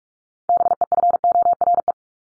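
Morse code sent at 45 words per minute: a single steady tone keyed on and off in quick dots and dashes, spelling out the word 'before'. It starts about half a second in and lasts about a second and a half.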